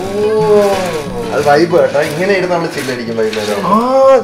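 Speech: people talking in Malayalam, with one voice drawn out long in the first second.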